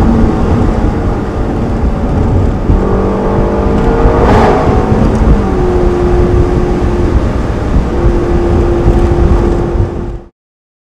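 Ferrari California V8 engine heard from the open cabin over heavy wind rumble, its pitch rising as the car accelerates a few seconds in, with a short sharp burst in the middle, then holding one steady note through the second half.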